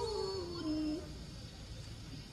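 A young woman's Quran recitation (tilawah): one long held, ornamented note with a wavering vibrato that slides down in pitch and ends about a second in.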